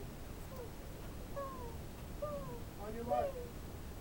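Faint distant voices, short falling phrases every second or so with a brief cluster near the end, over a low outdoor rumble.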